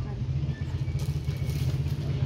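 A steady low motor rumble, with faint voices behind it.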